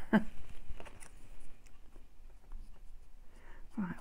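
A brief laugh trailing off, then faint rustles and light taps of paper and craft pieces being handled on a cutting mat, with a breath just before talking resumes.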